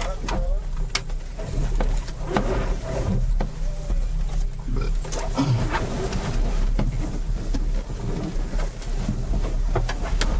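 Repeated clicks, knocks and rustling as crash helmets and a balaclava are pulled on and adjusted inside an enclosed powerboat cockpit. A steady low hum runs underneath, with faint voices in the background.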